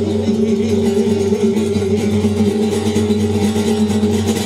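Flamenco acoustic guitar playing continuously between sung verses.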